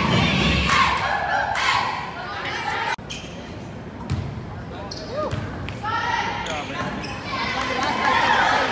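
Volleyball struck by hand on a serve, a short thud about four seconds in, followed by a second thud about a second later as the ball is played. Players and spectators talk and call out in the gym around it.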